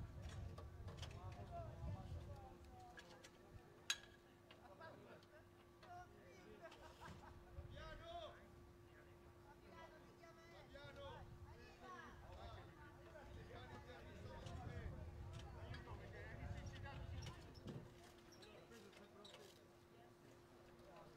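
Faint, indistinct background voices of people talking, over a low rumble and a steady hum. A single sharp click comes about four seconds in.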